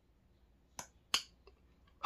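Two short, sharp clicks about a third of a second apart, the second louder, then a very faint tick.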